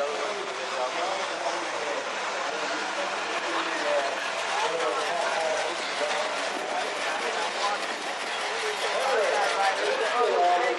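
Chatter of many people in an outdoor crowd, with a car's engine running as it rolls slowly past.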